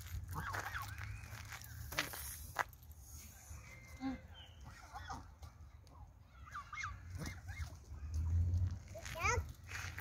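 A few scattered short calls from Canada geese over a steady low rumble of wind, with the clearest calls just before the end.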